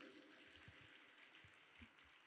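Near silence: faint background hiss with a few soft, low thumps.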